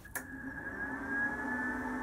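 Cooling fan of an IGBT inverter MIG welder spinning up just after power-on: a click, then a whine that rises slightly in pitch and settles into a steady hum.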